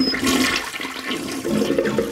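Toilet flushing: water rushing through the bowl, a cartoon sound effect.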